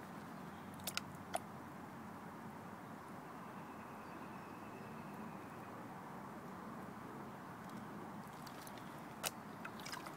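Water and gravel swishing faintly and steadily in a plastic gold pan as it is shaken and washed down to the last of the dirt. There are a few sharp clicks of small stones against the pan, about a second in and again near the end.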